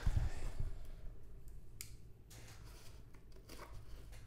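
A cardboard box of rolled quarters being handled and turned over on a table: a heavy low thud in the first half second, then faint rubbing of cardboard, with a sharp click a little under two seconds in.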